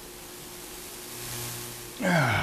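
Faint steady hiss of background room noise with a thin steady hum, and a low hum that swells slightly about a second in.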